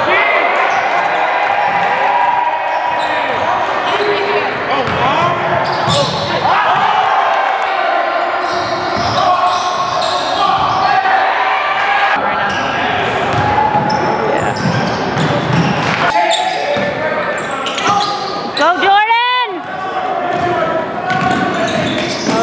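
Indoor basketball game sound: spectators talking and cheering, with a ball bouncing on the court and sneakers squeaking on the floor.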